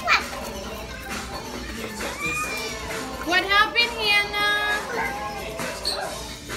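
Young children chattering and calling out in high voices, with a few louder high-pitched calls about halfway through, over background music.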